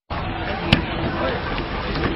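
Steady hiss and room noise with faint voices, and one sharp knock a little under a second in.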